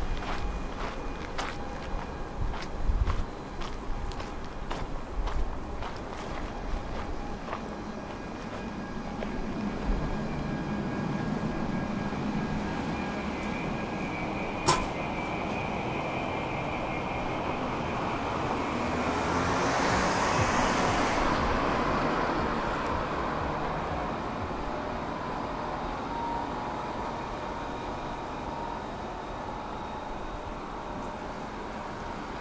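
Footsteps on paving stones for the first several seconds, then a car passing on the street, growing to its loudest about two-thirds of the way through and fading away. A single sharp click about halfway through.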